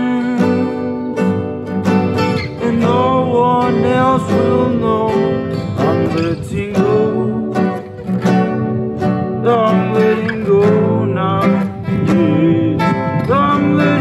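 Two acoustic guitars played together, strummed and picked, with a man singing a melody over them.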